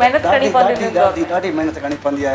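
Speech only: a woman talking steadily in conversation.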